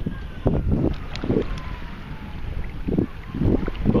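Wind rumbling on the microphone, with water sloshing in short, irregular surges as a metal detectorist wades and sweeps his detector coil through shallow water.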